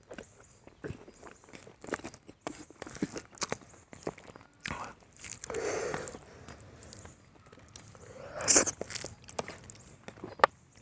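Eating sounds: mouth chewing with wet smacks, and fingers mixing rice into a meat curry gravy on a plate, heard as scattered soft clicks and squelches. A louder burst comes about eight and a half seconds in.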